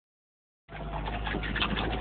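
Sound cuts in just under a second in: low engine and drivetrain rumble inside a 1995 Jeep Wrangler YJ's cabin on a trail, with repeated short high squeaks from the spare tire in the back.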